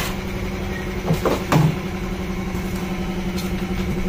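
Steady low mechanical hum, with a few short knocks about a second and a half in as a corrugated vacuum hose is handled in a cardboard box.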